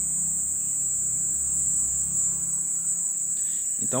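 Crickets trilling in one steady, high, continuous tone, with a faint low hum underneath.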